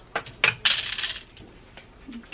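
Plastic clothes hangers clacking: two sharp clicks, then about half a second of clattering scrape.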